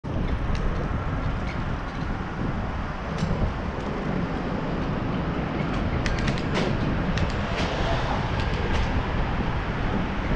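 Wind rumbling on an action camera's microphone during a bicycle ride, with tyre and road noise underneath. Scattered sharp clicks and rattles come through, most of them about six to nine seconds in.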